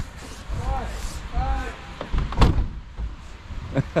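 People's voices talking in the background, with one sharp slam about two and a half seconds in, the loudest sound here.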